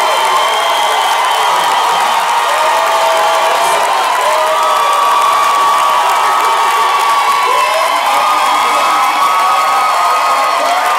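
Theatre audience cheering, whooping and shouting together, a steady loud roar of many voices with high whoops rising and falling through it.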